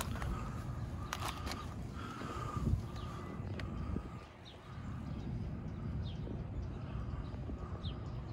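Outdoor ambience: an uneven low rumble of wind or handling on the microphone, with a soft low thump between two and three seconds in. Faint short high chirps come every second or two.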